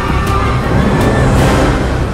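Rumble of a roller coaster train running along its track, a promotional sound effect over dramatic music, with a whoosh swelling near the end.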